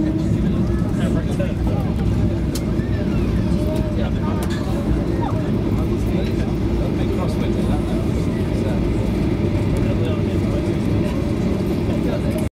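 Inside the cabin of a Boeing 737-800 rolling along the runway after landing: a steady low rumble from the engines and the wheels, with passengers talking under it.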